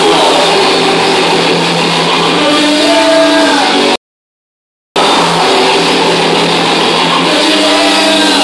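Thrash metal band playing loudly live, with heavily distorted electric guitar chords to the fore. The sound drops out completely for about a second midway, then the playing resumes.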